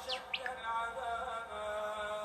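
A voice chanting a slow, drawn-out melodic line with long held notes. About half a second in come two quick high chirps, one sweeping down and one sweeping up.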